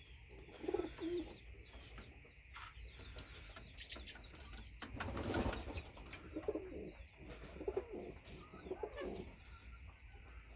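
Homing pigeons cooing in a loft, low calls coming again and again every second or two, with a brief louder rustling rush about five seconds in.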